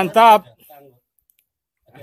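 A man's voice calling out loudly for about half a second, then a few faint words, then silence for the rest.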